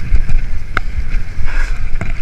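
Wind buffeting the microphone of a bike-mounted camera, with the rattle and knocks of a mountain bike running fast over a rough dirt trail; one sharp knock stands out just under a second in.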